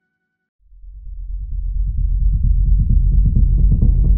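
Electronic dance music starting after a brief silence: a deep, pulsing synth bass fades in about half a second in and grows steadily louder and brighter as higher sounds open up over it.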